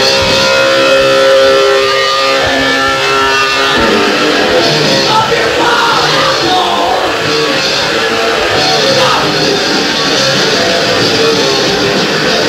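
Hardcore punk band playing live, recorded on a worn audience tape dub: distorted electric guitar chords, with a denser full-band sound taking over about four seconds in.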